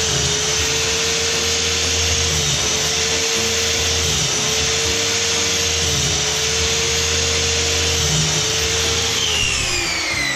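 Electric mitre saw running steadily while notching a timber batten, its motor whine dipping slightly every second or two as the blade bites into the wood. Near the end it is switched off and winds down with a falling whine.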